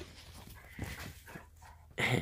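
A retriever panting and sniffing at close range, a quick run of short breaths about a second in.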